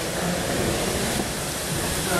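Steady rushing noise, like running water or moving air, with no clear rhythm or strokes.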